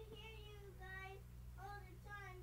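A faint high-pitched singing voice carrying a melody in held notes that step up and down, over a steady low hum.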